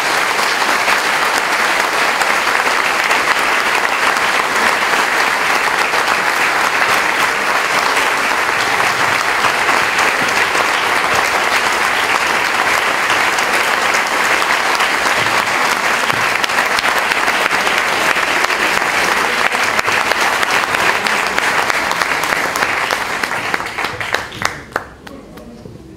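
Audience applauding, a dense, steady clapping that thins out to a few last claps at the very end.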